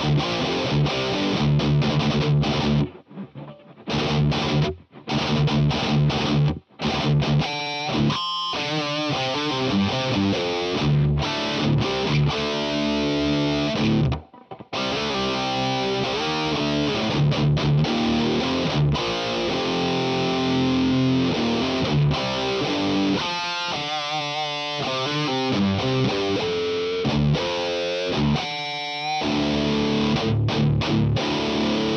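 Electric guitar played through a Friedman BE-OD overdrive pedal into the ML Sound Lab Humble, a Dumble-style clean amp sim: heavily distorted riffs and chords with sudden stops to near silence a few times in the first half, and quick rippling note runs later on.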